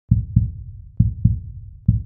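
Opening of intro music: deep thumps in pairs, in a heartbeat rhythm, about one pair a second.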